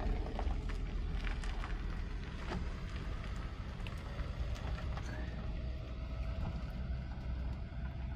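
A van driving away down a lane, its engine running steadily under a low rumble of wind on the microphone, with small scattered clicks.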